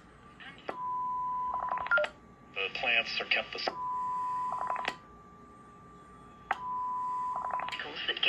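Rohde & Schwarz EK 893 HF receiver running its built-in self-test at power-up: three steady beeps of one pitch, each about a second long and starting with a click. Short bursts of garbled, voice-like audio come between the beeps.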